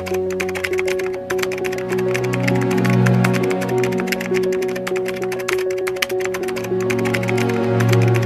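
Background music with a bass line and a repeating mid-pitched note, overlaid with a keyboard-typing sound effect: a rapid, continuous run of small clicks.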